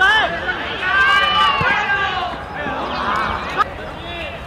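Shouted calls from players on an open football pitch during play: several loud, high-pitched shouts, the longest about a second in, over outdoor background noise.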